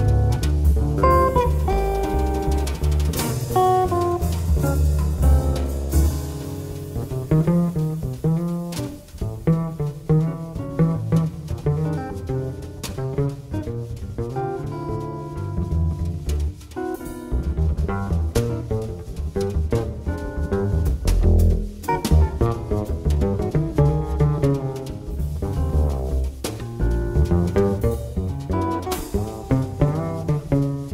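Jazz trio playing: electric guitar lines over a walking bass line and a drum kit with cymbals.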